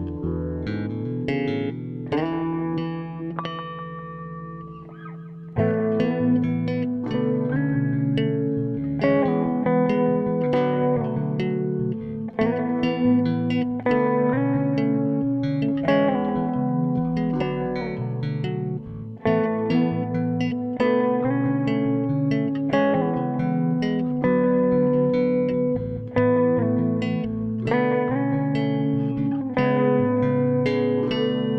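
Solo electric bass, a custom Makassar-wood instrument, plucked in a slow chordal melody with notes left ringing. A quieter fading stretch gives way to a loud entry about five and a half seconds in.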